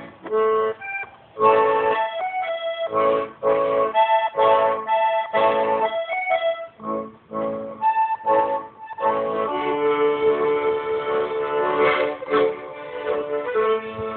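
Piano accordion playing an instrumental passage: short, detached chords and melody notes at first, then held, sustained chords from about two-thirds of the way through.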